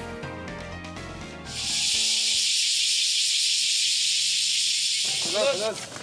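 Short stretch of music, then a loud, steady high hiss for about three and a half seconds that stops abruptly near the end, where music or voices return.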